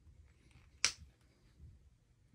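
A single sharp click of hard plastic action-figure parts, a little under a second in, as a scarf accessory is pressed onto a GI Joe Classified Kamakura figure; faint handling rustle around it.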